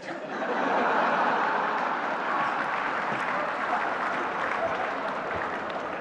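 Seated audience laughing and applauding. The clapping swells within the first second and then slowly tapers off.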